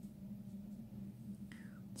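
Quiet room tone with a steady low hum, and a short, faint breath about one and a half seconds in.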